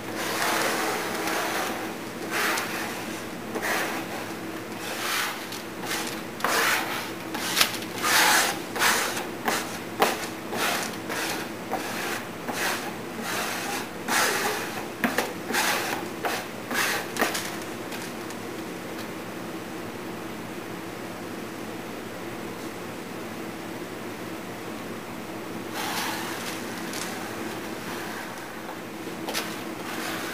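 Notched glue spreader scraping resin glue across a plywood panel in quick, repeated strokes, busy for roughly the first seventeen seconds, then again briefly near the end.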